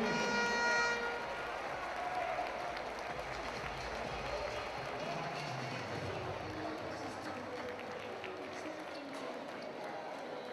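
Sports-hall crowd ambience: low, steady chatter and scattered hand-clapping from players and spectators. A brief held tone fades out in the first second.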